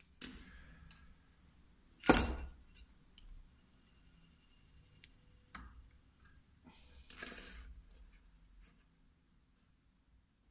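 Small clicks and rustles of fine silver wire being handled and pushed through the metal tags of a rotary switch, with one louder sharp click about two seconds in. About seven seconds in, a brief hiss as the soldering iron touches the joint.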